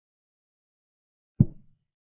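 Online chess board's piece-move sound effect: one short low knock about one and a half seconds in, dying away quickly.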